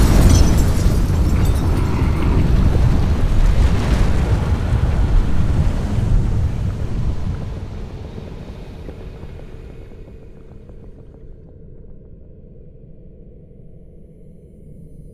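A loud, deep rumbling, explosion-like sound effect from the advert's soundtrack. It dies away over a few seconds about halfway through, leaving a faint low hum.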